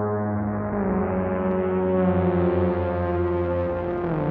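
Electronic music: a low, sustained synth drone that sounds like a horn, steps down in pitch under a second in, and grows steadily brighter as a filter opens.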